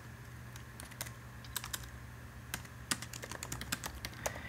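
Typing on a MacBook laptop keyboard: soft, irregular key clicks at an uneven pace, over a faint steady low hum.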